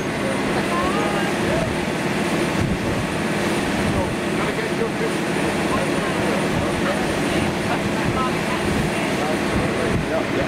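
Boat engine running steadily at speed, with a constant drone, wind on the microphone and the rush of the wake.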